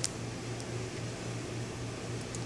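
A steady low hum over constant background room noise, like a fan or air conditioner running.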